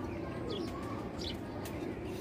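Caged domestic pigeons cooing in a low, steady drone, with a few short high chirps about half a second and a second in.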